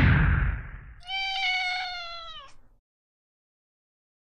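Logo sting: a loud whoosh that fades over the first second, then a single drawn-out cat meow that drops in pitch at its end.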